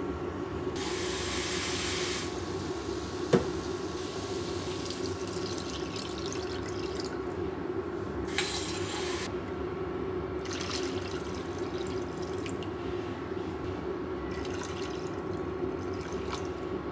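Water poured into a frying pan of beef, carrots and potatoes, splashing in several bursts, over a steady low hum. One sharp knock about three seconds in.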